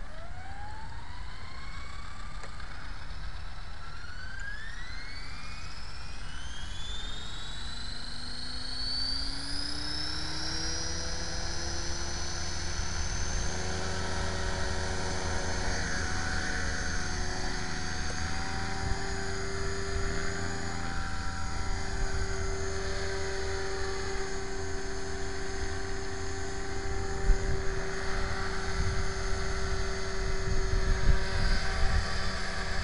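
Electric T-Rex 500 RC helicopter spooling up: the motor and rotor whine rises steadily in pitch over about ten seconds, then holds as a steady whine at flying speed. Near the end it grows louder, with low rumbling, as the helicopter lifts into a hover.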